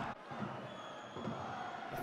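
Faint, steady noise of a football stadium crowd.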